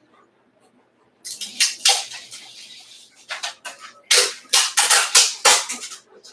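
Packaging tape being rubbed and pressed down by hand onto a table top: a run of short scratchy bursts that starts about a second in and is thickest and loudest in the second half.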